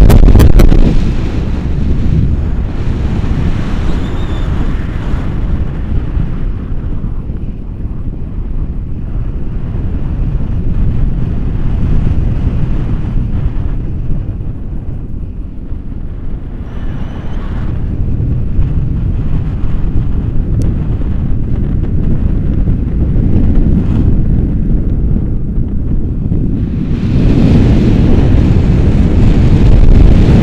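Airflow buffeting the microphone of a pole-mounted action camera in tandem paragliding flight: a loud, gusty low rumble. It eases off about a second in and builds up again near the end.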